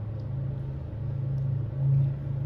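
A steady low rumble or hum, like an engine or machine running, swelling briefly near the end.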